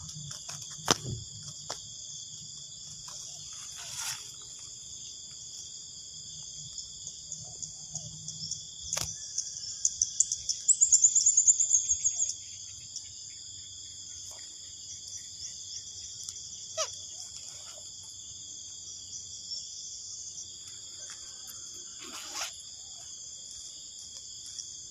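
Steady high-pitched insect chorus with a few sharp clicks scattered through it. About ten seconds in, a louder, rapid high trill runs for about two seconds.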